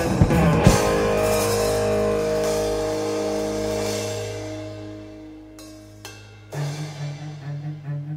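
Rock band recording with guitar, bass, drums and cello, instrumental: a last crash of drums and guitar, then a held chord ringing out and fading over about five seconds. About six and a half seconds in, a low string line begins, repeating short, even notes.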